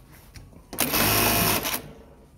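Juki LK-1900BN computerized bartack sewing machine sewing one bartack through denim: a single burst of fast stitching that starts under a second in and cuts off about a second later.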